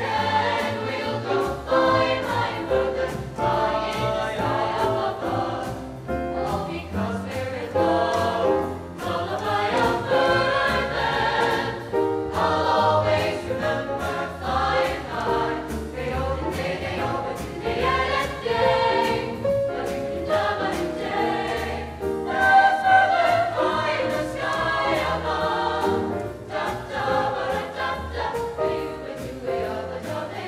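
A small mixed choir of young men and women singing together in several parts, their voices moving from chord to chord without a break.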